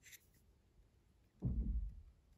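Fingers handling and turning a small plastic Lego flower pot, with faint rubbing of the plastic. About a second and a half in, a short, muffled low rumble is the loudest sound.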